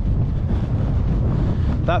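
Strong wind buffeting the microphone, a steady low rumble, "horrific".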